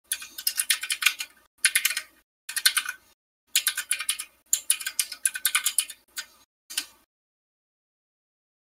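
Fast typing on a computer keyboard: several bursts of rapid key clicks with short breaks between them, stopping about seven seconds in.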